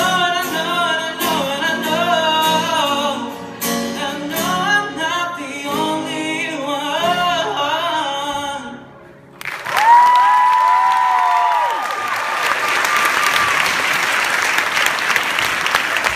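A man singing to his own acoustic guitar, the song ending about nine seconds in. An audience then breaks into applause and cheering that carries on steadily.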